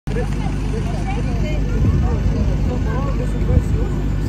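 Steady low mechanical drone of airport apron machinery next to a parked airliner, with the overlapping chatter of a crowd of passengers queuing to board.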